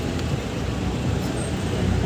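Steady low rumble of outdoor street noise, with no distinct strokes or clicks standing out.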